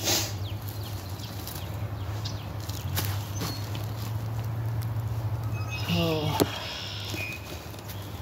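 A large oak log round being pushed and rolled upright by hand, with light knocks and scrapes of wood and a short strained vocal grunt about six seconds in, over a steady low hum.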